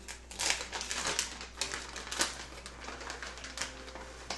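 Plastic packet of shredded cheddar cheese being opened and handled, an irregular run of crinkling crackles with a few louder snaps.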